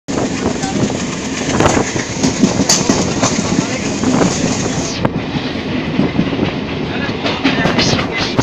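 Passenger train running on the track, heard from a carriage window: a steady rolling noise of wheels on rail with many short irregular clacks.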